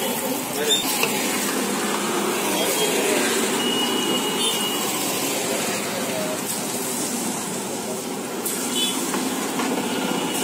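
Malpua batter sizzling and bubbling as it is ladled into a large wok of hot oil and deep-fries, with steady street noise of voices and traffic around it.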